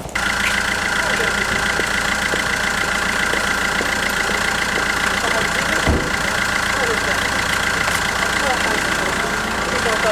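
Steady engine running at idle, starting and cutting off abruptly, with faint voices under it.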